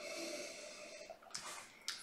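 A man breathing in through his nose at a whisky glass held to his face: one faint drawn-out sniff of about a second, then a shorter breath about a second and a half in.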